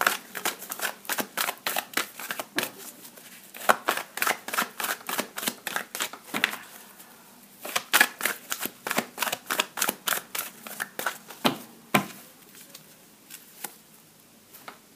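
Oracle cards (the Wisdom of the Oracle deck) being hand-shuffled: rapid flicks and slaps of card against card in three quick runs with short pauses between them, then a couple of single taps near the end.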